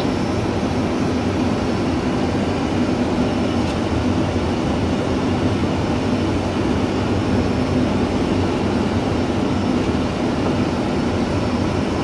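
Steady cockpit noise of a Boeing 737 on short final approach: an even rushing of airflow and engine hum, with no distinct events.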